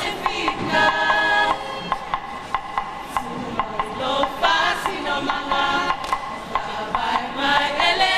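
A group singing a Samoan song together, with sharp hand claps keeping a steady beat about twice a second.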